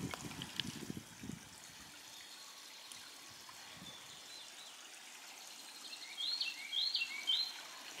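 Faint, steady trickling of water, with a short run of three or four high bird chirps about six seconds in.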